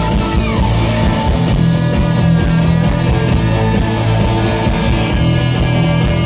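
Live rock band playing a loud instrumental stretch, with electric guitar and bass over drums and no vocals.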